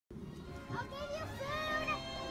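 Young children's voices talking and calling out in high, sliding tones.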